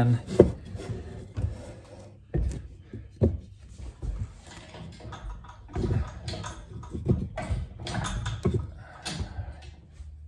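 Heavy wooden blocks being slid and stacked on a wooden tabletop: a series of irregular knocks of wood on wood, with scraping between them.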